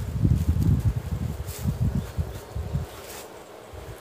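Wind buffeting the microphone in uneven low rumbling gusts, dying down about three seconds in, with faint rustling.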